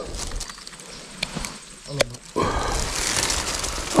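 A snakehead (haruan) being clamped with a fish lip grip and lifted from the water: a sharp click about two seconds in, then a loud, rough splashing and rustling noise for the last second and a half.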